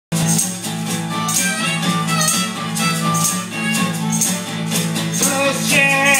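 Acoustic guitar strummed in a steady rhythm, with a hand shaker keeping time in even strokes. A voice starts singing near the end.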